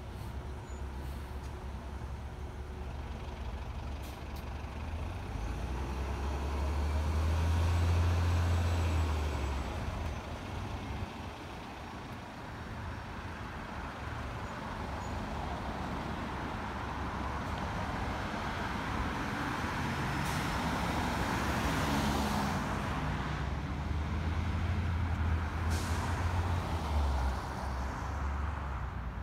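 New Flyer XN40 natural-gas transit bus pulling away and accelerating. Its low engine rumble swells a few seconds in, then fades as it drives off, with other road traffic passing and a second rumble near the end.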